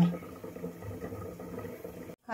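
Faint, steady sound of a large aluminium pot heating on a gas stove burner.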